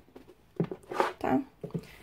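A hardcover book is handled and set back on a wooden bookshelf, giving a few short soft knocks and rustles.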